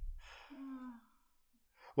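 A person sighing: a breathy exhale of about a second with a short low hum in it, opening with a soft low thump.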